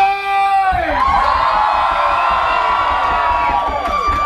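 A man's long shouted call, falling away under a second in, answered by a crowd cheering in one long, loud, held shout.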